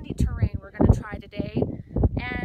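A woman talking, with wind rumbling on the microphone.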